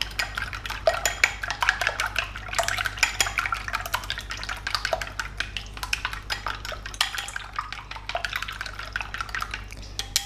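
Wooden chopsticks whisking beaten eggs in a ceramic bowl: a fast, continuous run of light clicks against the bowl's side, stopping near the end.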